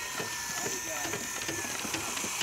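A DeWalt 18V cordless circular saw cutting through a wooden board: a loud, steady rush of blade noise with a thin whine that slowly falls in pitch.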